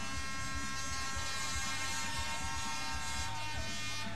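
Rock music with a long, buzzing, held chord on distorted electric guitar over a steady low beat; the chord dies away about three seconds in.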